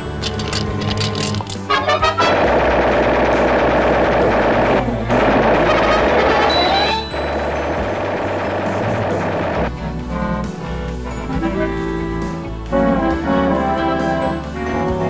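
Cartoon soundtrack: a long stretch of rapid gunfire sound effects from about two seconds in to nearly ten seconds, with a brief break, over an orchestral score. After it, brass-led music carries on.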